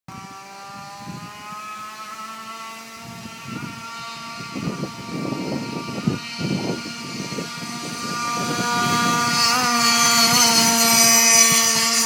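Goped stand-up scooter's Trevor Simpson case-reed two-stroke engine running at high revs, a high-pitched buzz that climbs slowly in pitch. It grows steadily louder as the scooter approaches for a fly-by and is loudest near the end.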